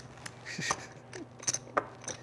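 Casino chips clicking against one another as a roulette dealer's hands gather the losing bets off the felt layout: a few separate sharp clicks, the clearest near the middle and about three-quarters of the way through.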